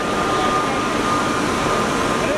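Steady background noise at an airport terminal kerb: a constant loud roar with a thin, high, steady tone running through it.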